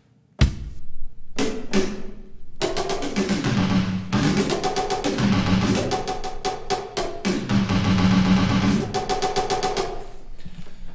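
Sampled drum kit in Groove Agent SE playing a beat with snare rolls, the snare's pitch bent up and down by as much as an octave with a MIDI controller's pitch-bend wheel. A few single hits come about half a second in, and the full repeating pattern starts about two and a half seconds in.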